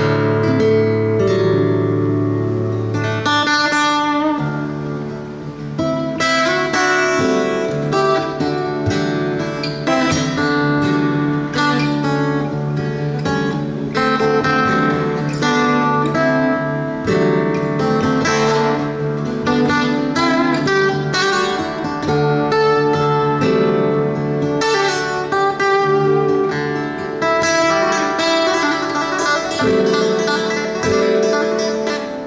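Acoustic guitar played fingerstyle: a plucked melody over ringing bass notes and chords, with a low bass note held for the first few seconds.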